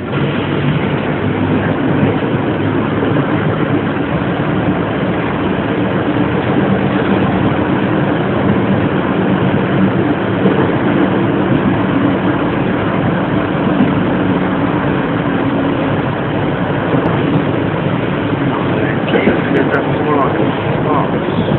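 Engine and road noise inside a moving city bus: a steady low hum from the engine under a constant rumble, with no break.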